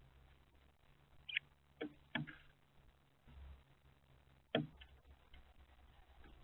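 A few sharp taps and clicks as wrens peck seed from the feeder's plastic tray, picked up by the feeder camera's microphone. The loudest tap comes about four and a half seconds in.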